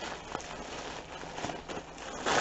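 Soft rustling of tissue paper and clothing being handled, with a light tap about half a second in.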